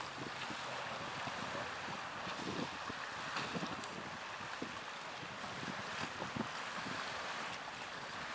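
Wind buffeting the microphone in irregular low thumps, over a steady rushing hiss of wind and the choppy river water.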